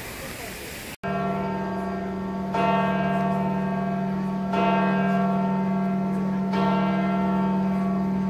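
A church bell tolling, starting about a second in and struck four times, roughly every two seconds. Each strike rings on over a steady low hum.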